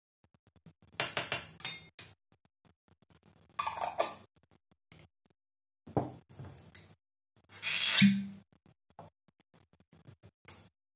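Metal spoon scraping and clinking against a small stainless-steel bowl as badger fat is knocked off it, then jars and a bottle being handled on the tabletop. Short bursts of clatter come about a second in, around four seconds, around six seconds and near eight seconds, with quiet between them.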